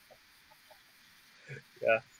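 Faint room tone over a video-call connection, broken near the end by a woman's brief voiced sound and then a louder "Yeah".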